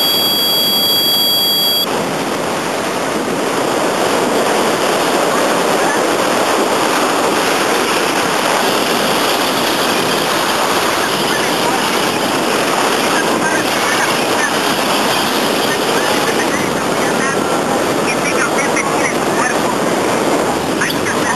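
Airflow buffeting the microphone during a paragliding flight: a steady loud rush. A steady high tone sounds for about the first two seconds, then cuts off.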